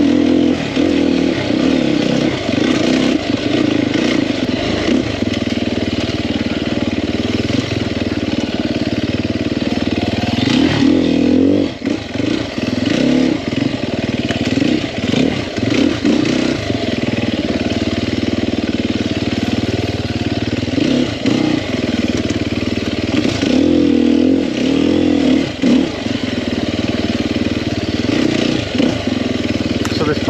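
The single-cylinder four-stroke engine of a 2021 Sherco 300 SEF enduro motorcycle running under load on trail, its revs rising and falling with the throttle. The engine note briefly drops off about twelve seconds in.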